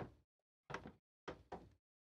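A single sharp knock on the work desk, then three softer bumps about a second apart: handling noise as the 3D-printed hammer prop is set down and moved on the desk.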